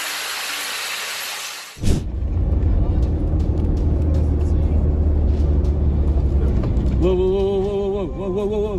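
A steady hiss, then after a sudden cut a loud low rumble of engine and road noise heard from inside a moving car. Near the end a wavering, pitched sound such as a horn or a shout joins in.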